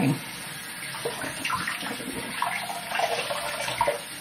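Hot water running steadily from a bathroom sink tap.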